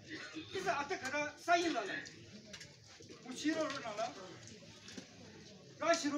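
Speech only: a man addressing a crowd in phrases, with short pauses between them, in a language the recogniser cannot follow.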